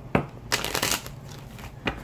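Tarot cards being shuffled by hand: a sharp tap, then a half-second riffle of cards, and another tap near the end.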